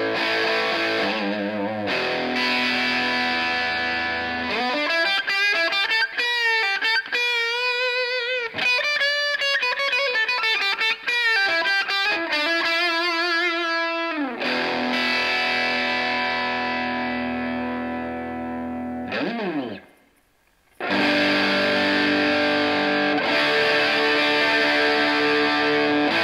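Electric guitar (a Legend Telecaster-style guitar) played through a Xotic SL Drive overdrive pedal, with the pedal's DIP switches 1, 2 and 4 on and 3 off. Held overdriven chords give way to a single-note lead line with bends and vibrato, then a sustained chord that ends in a slide down the neck. After about a second of near silence, a new chord starts near the end.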